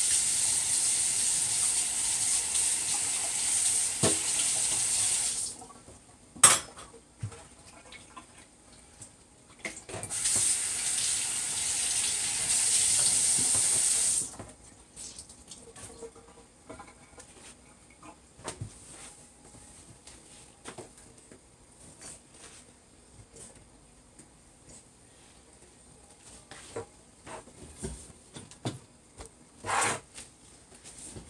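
Kitchen tap running into a stainless steel sink as a dish is rinsed, in two runs of about five and four seconds. Between and after the runs come a sharp knock and scattered small clinks of dishes being handled.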